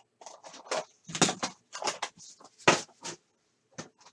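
Hands handling a cardboard trading-card box and its packaging: a run of short, irregular rustles, scrapes and taps.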